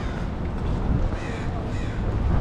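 Birds calling overhead, two short calls, one about a second in and one near the end, over a steady rumble of wind on the microphone.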